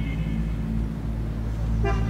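Street traffic with car horns honking: one short toot at the start and another near the end, over a steady low hum of traffic.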